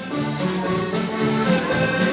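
Live folk dance band led by accordion playing a dance tune with a regular beat.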